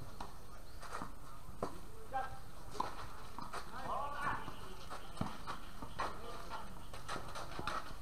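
Tennis rally: a series of sharp knocks of racket strings striking the ball and the ball bouncing on the court, coming at irregular intervals, with faint voices of players.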